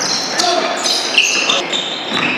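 Basketball practice on a hardwood court: several short, high sneaker squeaks and a basketball bouncing.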